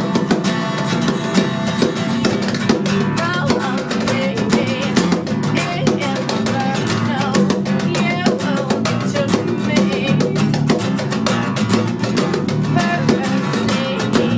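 Live acoustic rock song: a strummed acoustic guitar and a bass guitar playing steadily, with a woman singing over them.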